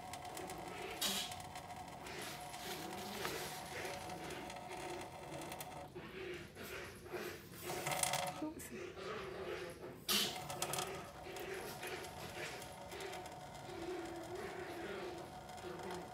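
Thin stream of water trickling from a kitchen faucet into a stainless steel sink, with a couple of brief louder noises about a second in and again about ten seconds in.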